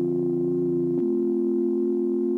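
Background music: a sustained synthesizer chord whose lowest note drops out about a second in.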